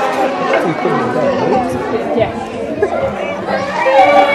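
A group of young children chattering and calling out over one another, many high voices overlapping at once.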